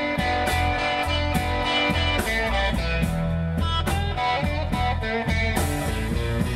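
Live blues band playing between sung lines: electric guitar over drums with a steady beat.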